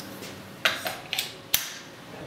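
A few small clicks and light taps from hands handling the cmotion Cvolution motor control box and its plugged-in cable connectors, with a sharper click about one and a half seconds in.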